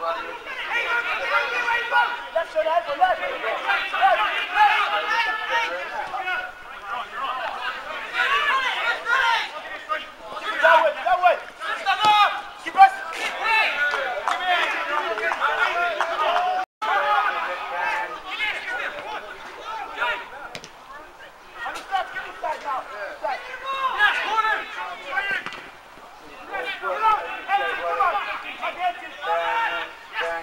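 Indistinct chatter of football spectators, voices going on throughout, with one sharp knock about 13 s in. The sound drops out for an instant near 17 s.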